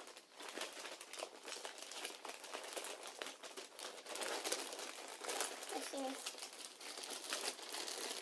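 Wrapping paper crinkling and rustling continuously as it is folded and pressed around books by hand. A brief voice sound comes in just before six seconds in.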